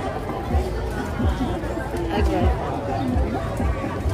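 Crowd chatter: many people talking at once, with repeated low bumps underneath.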